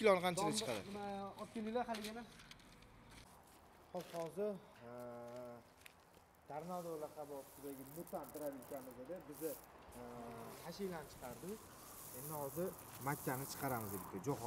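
People talking, quieter than the close narration, with a pause of a couple of seconds early on; no machine is heard running.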